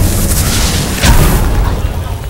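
A loud, deep rumbling boom sound effect for a magic blast, with a second sudden blast about a second in.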